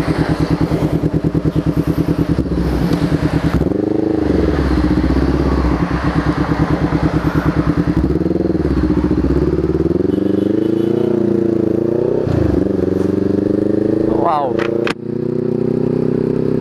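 Honda CB500X parallel-twin engine, fitted with an R9 aftermarket exhaust, pulsing evenly at low revs. After about four seconds it pulls away, its revs rising and falling several times as the bike gets under way.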